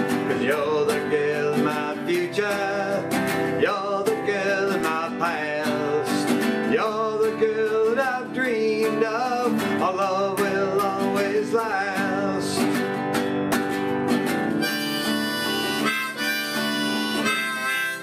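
A man singing over a strummed acoustic guitar. The voice stops about two-thirds of the way through, and a harmonica in a neck rack takes over the melody over the same guitar strumming.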